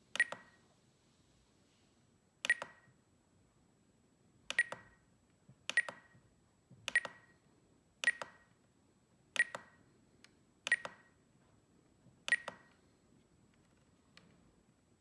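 Spektrum DX9 radio transmitter giving a short beep with a click at each press or turn of its roller wheel, nine in all, one to two seconds apart, as menu settings are changed.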